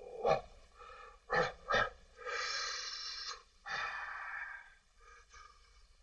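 Breathy, wheezing laughter without words: a few short gasps, then two longer hissing breaths of about a second each.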